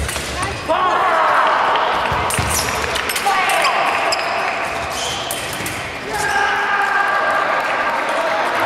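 Voices in a large sports hall, with a sharp knock at the start and a few thuds on the wooden floor.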